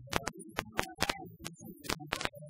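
A choir singing, with loud, irregular hand claps cutting through every few tenths of a second.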